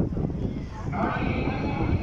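The muezzin's call to the maghrib prayer (adhan) carried over loudspeakers: a long, held melodic line comes in about a second in, over a low rumble.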